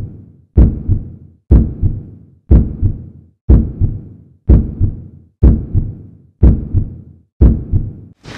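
Heartbeat sound effect: eight slow, loud, deep double thumps, about one a second, each fading away before the next.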